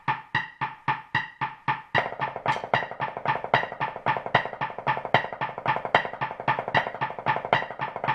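Drumsticks playing ninelets, nine even strokes to the beat, as a fast steady run of sharp strikes. The strokes come thicker from about two seconds in.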